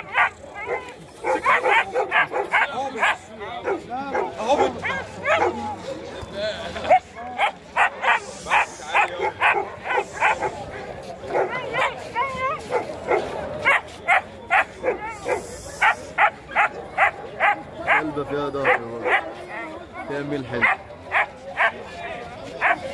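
German Shepherd puppy barking over and over in short barks, about two or three a second.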